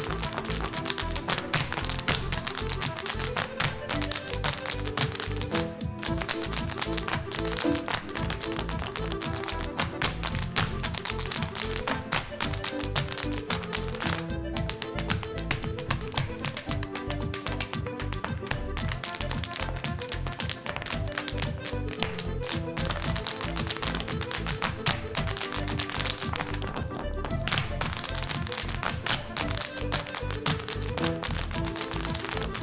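Irish dancers' hard shoes beating rapid, rhythmic taps on a wooden floor in time with lively Irish dance music.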